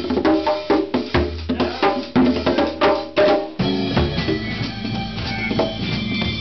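Congas played by hand in a jazz jam: a quick run of sharp, pitched slaps and open tones. A little over halfway through, the sound switches abruptly to the full jazz combo playing, with keyboard and drum kit.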